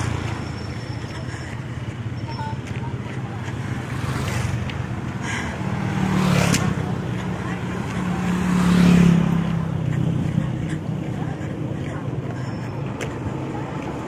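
Road traffic: a steady low engine rumble, with two vehicles passing close by about six and nine seconds in, the second the loudest.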